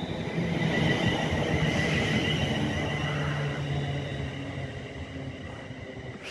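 West Midlands Railway Class 350 Desiro electric multiple unit pulling out, its traction motors giving a steady whine over the rumble of the wheels, loudest about a second in and then fading as it draws away.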